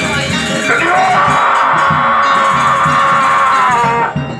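Balinese gamelan music accompanying a topeng mask dance: a steady rhythmic pulse underneath, with one long held high note from about a second in that dips slightly just before the end.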